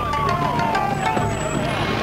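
A siren winding down, one tone falling steadily in pitch over about two seconds, over the noise of vehicles and a crowd.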